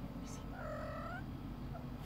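A cat meowing once, a single short call of under a second, over a steady low background hum.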